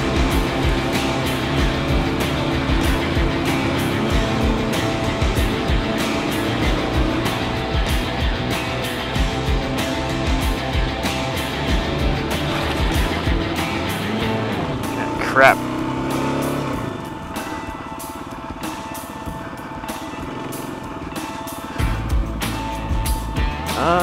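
Dual-sport motorcycle engine running along a rough dirt trail, with frequent short knocks. A quick rev rises sharply about fifteen seconds in, then the engine settles to a lower, quieter note as the bike slows.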